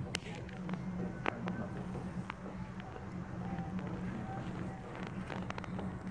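Distant drumming and chanting carrying across open water from a small cruise ship: scattered drum beats and faint voices over a steady low hum.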